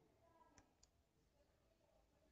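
Near silence: faint room tone with two faint clicks close together, a little over half a second in.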